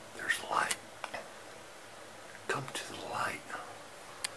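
Quiet whispered speech from a man: two short phrases, the second a couple of seconds after the first.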